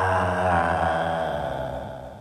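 A deep, drawn-out chanted voice holding one low note, then fading away near the end.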